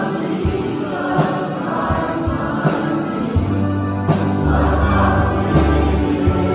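Live church worship band playing a slow worship song with voices singing, over a steady drum beat; a bass line comes in about halfway through.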